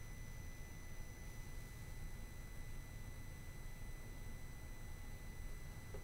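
Faint steady background noise: a low hum and hiss with a few thin high-pitched steady tones, and no distinct sound event.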